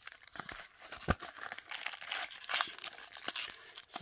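A trading-card pack wrapper crinkling and tearing as it is pulled open by hand: irregular crackles, with one sharp click about a second in.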